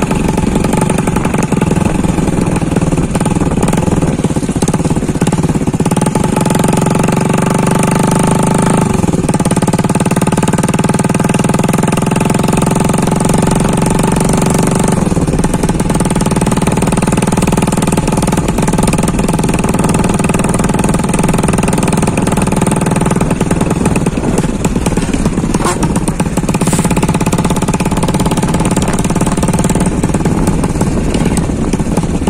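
Modified Bajaj CT 100 motorcycle's single-cylinder four-stroke engine running under way through an upright tractor-style exhaust stack. The note stays steady and loud, with its pitch falling and picking up again about nine seconds in and again around fifteen seconds in.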